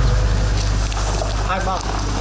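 A steady low rumble of outdoor background noise, with a person's voice speaking briefly about one and a half seconds in.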